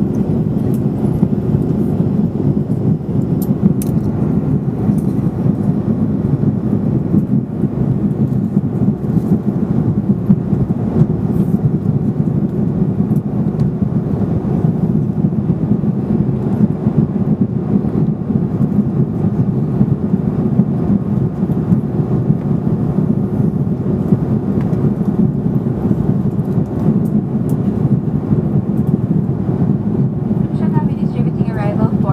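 Steady cabin noise of a jet airliner in flight, heard by a window over the wing: engine and airflow noise as an even low rumble that does not change.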